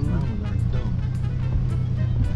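Steady low drone of a pickup truck's engine and road noise, heard from inside the cab.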